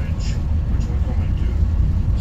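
Moving bus heard from inside the cabin: a steady low engine and road rumble, with snatches of voices over it.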